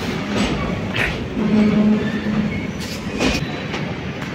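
Train crossing a steel truss railway bridge overhead: a continuous rolling rumble with irregular sharp clacks as the wheels pass over the rail joints.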